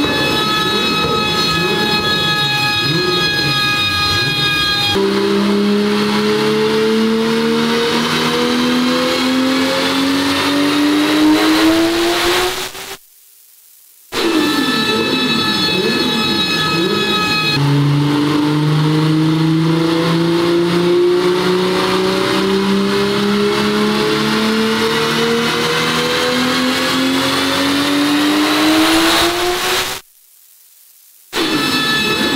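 Turbocharged engine of a heavily tuned VW Golf Mk2 at full throttle on a chassis dyno. Two power runs, each opening with wavering revs before the engine pulls, then climbing steadily in pitch for about eight to twelve seconds.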